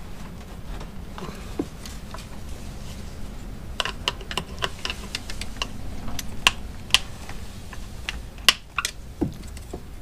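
Plastic cell covers being pried off a serviceable (non-maintenance-free) lead-acid boat cranking battery, to check the electrolyte. From about four seconds in there are a series of sharp, irregular plastic clicks and knocks.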